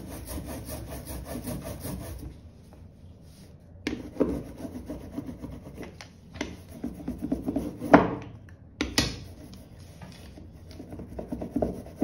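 Rubber brayer rolling back and forth over a freshly inked lino block in several strokes, with the sticky sound of tacky printing ink; the loudest stroke comes about eight seconds in.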